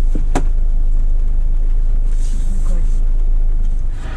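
Car moving slowly on wet pavement, a steady low rumble of engine and road noise, with a sharp click about a third of a second in and a brief hiss a little after two seconds.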